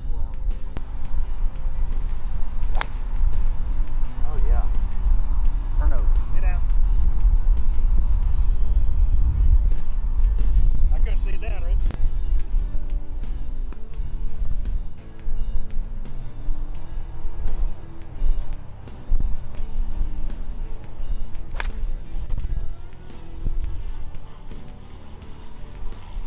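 Background music, with faint voices underneath and two sharp clicks: one about three seconds in and another late on.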